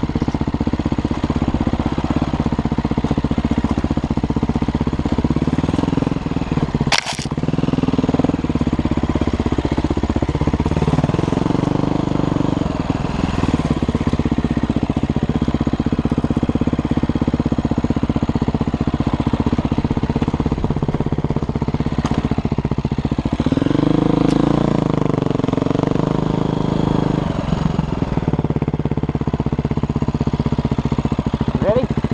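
Dirt bike engine running while riding a trail, its revs rising and falling with the throttle. There is a single sharp knock about seven seconds in.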